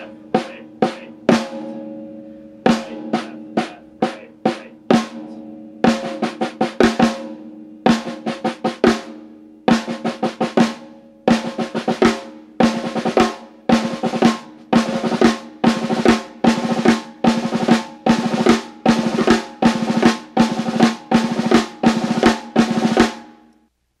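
Snare drum played with sticks in the six stroke roll rudiment (accented right, two lefts, two rights, accented left): slow, spaced groups of strokes at first, then speeding up into a fast, even run of repeating accented groups that stops just before the end. The snare's head rings under the strokes.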